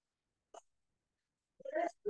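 A short, hiccup-like vocal sound from the narrator near the end, after a faint single tick about half a second in; otherwise quiet.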